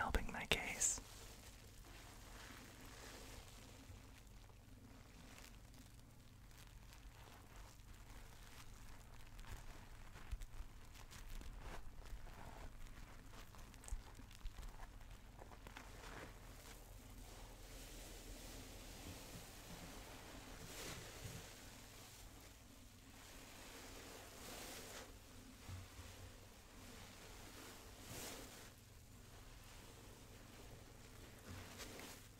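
Bubble-bath foam handled right at the microphone, a faint crackling rustle, with soft whispering in between. There is a brief louder burst at the very start.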